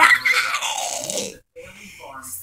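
A woman's voice trailing off into a breathy, falling sound after a spoken word, with some rustling as she moves; it drops out about a second and a half in.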